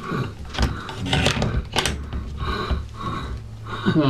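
Fast, heavy breathing through a gas mask, a rasping breath about every two-thirds of a second, with a few sharp clicks of handling in between.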